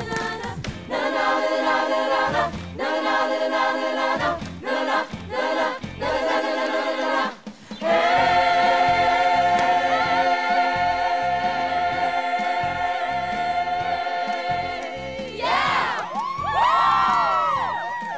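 Show choir singing: a few short chords, then one long held chord. Near the end the chord gives way to whoops and cheers.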